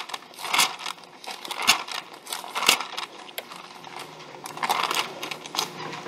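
Pages of a Bible being leafed through quickly, a string of short, irregular paper rustles.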